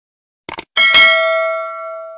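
Notification-bell sound effect: a quick click about half a second in, then a bright bell ding that rings on and fades away over about a second and a half.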